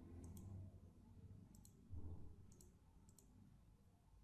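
Faint computer mouse button clicks, four times over a few seconds, against a faint low room hum.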